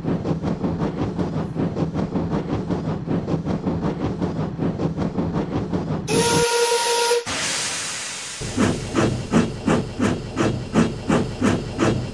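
Steam locomotive chuffing in an even beat of about four to five a second, then a single whistle blast of about a second halfway through, followed by a rush of steam. It then chuffs off again slowly, at about two beats a second, picking up a little.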